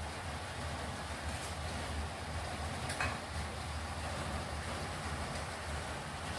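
Steady low rumbling background noise with an even hiss above it, and one faint click about three seconds in.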